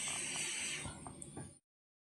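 Hot air rework station blowing at 390 °C over a circuit board's Wi-Fi chip to melt its solder: a steady airy hiss that thins out about a second in, with a few faint ticks, then cuts off abruptly.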